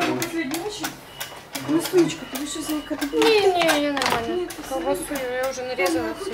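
Voices talking, among them a child's voice, with no words clear enough to make out.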